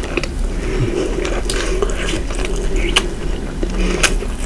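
Close-miked chewing of a Nutella-filled croissant: irregular, quick crackles and wet clicks of flaky pastry and spread in the mouth.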